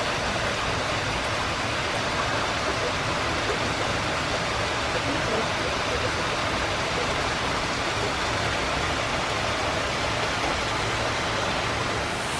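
Hot-spring water pouring steadily from a wooden spout into a soaking tub, an even, unbroken rush of splashing water.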